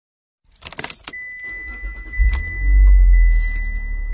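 Car keys jangling, then a car engine starting and settling into a steady low rumble, with a thin steady high electronic tone from about a second in.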